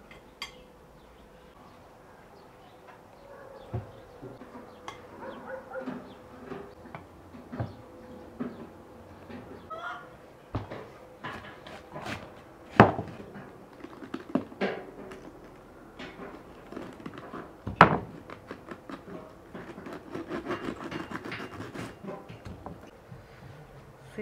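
Kitchen handling sounds: a metal spoon scraping and clinking in a glass bowl of minced-meat filling, and a knife cutting into a head of cabbage on a wooden board. Scattered clicks run throughout, with two sharp knocks about halfway through and again about three-quarters of the way in.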